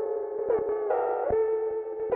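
Opening melody of a dark trap beat: a synth lead holding sustained notes, with short pitch slides and a note change about every half second, without drums or bass.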